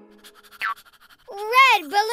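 A cartoon baby's wordless 'ooh' vocalisation, starting past halfway through, its pitch rising and then falling, with a short rising chirp a little before it.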